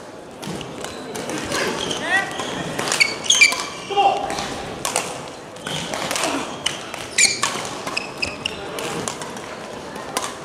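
Badminton doubles rally in a reverberant sports hall: sharp racket strikes on the shuttlecock at irregular intervals, with shoes squeaking on the court floor and voices in the background.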